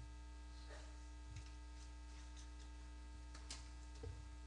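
Steady electrical mains hum, with a few faint, brief knocks.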